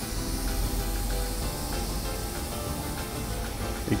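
Background music with steady held notes over the hiss of a hot frying pan sizzling with cognac and lamb fat as sugar is sprinkled in to caramelize.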